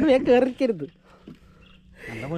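A man's voice, drawn out and wordless, for about the first second, then quiet with a few faint short sounds.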